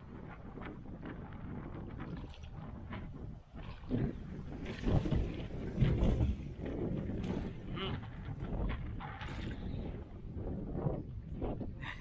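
Wind rumbling on the microphone while a hooked fish thrashes and splashes at the water's surface, the loudest splashes coming about five to six seconds in.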